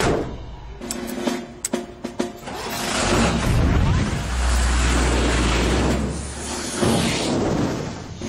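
Short cartoon music cue with sharp hits, then a loud rushing spaceship-engine sound effect with a deep rumble that swells for about four seconds and fades near the end.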